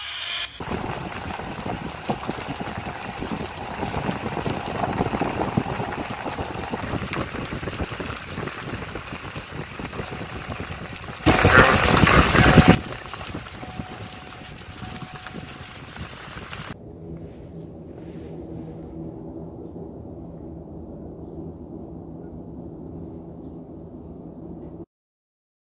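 Wind rushing and buffeting on a handheld camera's microphone, mixed with handling noise, with a louder full-range rush about eleven seconds in. From about seventeen seconds the sound turns muffled, the highs cut away, leaving a low steady hum.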